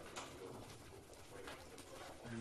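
Faint room noise of a lecture room, with a few soft knocks and rustles and a faint murmur.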